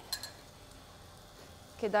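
A metal spoon clinks briefly against a small ceramic bowl near the start as toasted pumpkin seeds are scooped out, followed by quiet kitchen room tone.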